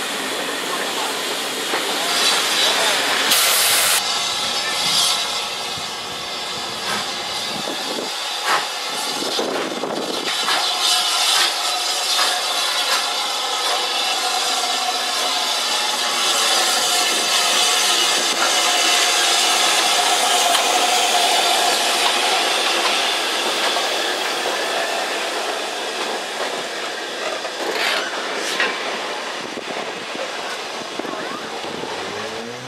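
Railway coaches rolling past on the rails with a short burst of steam hiss. Then a BR Standard Class 5MT 4-6-0 steam locomotive, No. 73082, runs past slowly with steam hissing.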